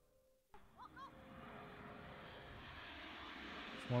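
Jet aircraft flying overhead in formation, heard as a steady rushing noise that starts suddenly about half a second in and grows slowly louder.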